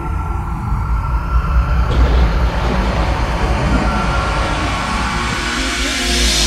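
Instrumental song intro: a deep, steady bass and held synth tones, with a hissing noise swell coming in about two seconds in and building to a bright whoosh at the end.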